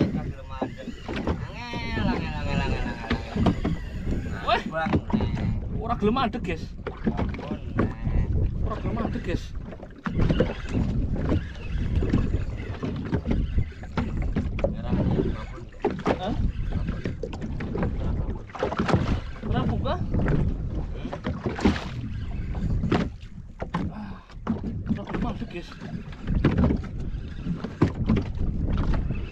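Wind buffeting the microphone and choppy sea water slapping against the hull of a small open boat, with frequent irregular knocks.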